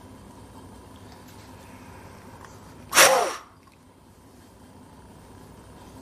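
A single hard, forceful blow of breath into a handheld peak flow meter about three seconds in, lasting about half a second, with a falling tone in it. This is a maximal exhalation for a peak expiratory flow reading, the second of three attempts.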